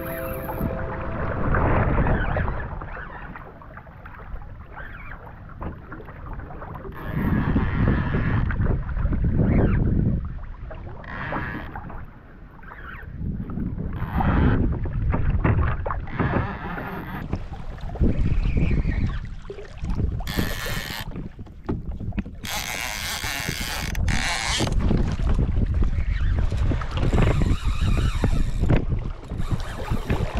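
Wind buffeting the microphone on a fishing kayak at sea, with water splashing against the hull in short hissy bursts every few seconds.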